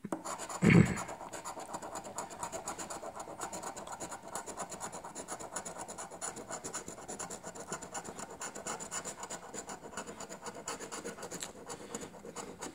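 A coin scratching the latex coating off a lottery scratch-off ticket in quick repeated strokes. A brief louder thump comes about a second in.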